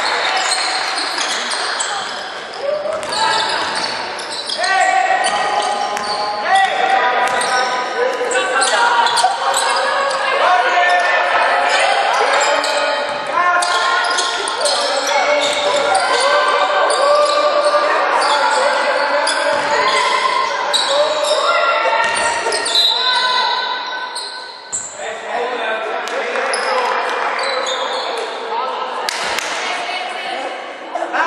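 Basketball bouncing on a hardwood court in a large, echoing sports hall, mixed with voices calling out.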